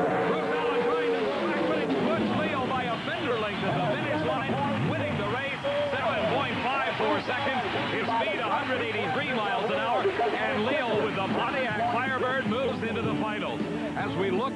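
Pro Stock drag cars' big carbureted V8s winding down, their pitch falling steeply over the first two seconds as the drivers lift after the finish line. Then a jumble of overlapping voices, with a steady engine note coming back near the end.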